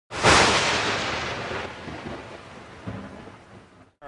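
A sudden loud rumbling boom, noisy and without pitch, that dies away over about three seconds and then cuts off abruptly.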